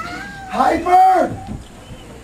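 A person's voice, not in words: one drawn-out vocal call that rises and then falls in pitch, loudest from about half a second in to just past the middle, then fading to quiet room noise.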